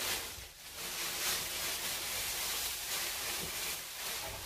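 Thin plastic bag rustling and crinkling as it is pulled over the hair as a cover for the deep conditioner.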